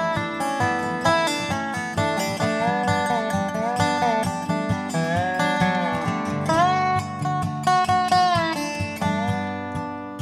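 Instrumental break of a Dobro resonator guitar played with a slide, its notes gliding up and down in pitch, over acoustic guitar accompaniment.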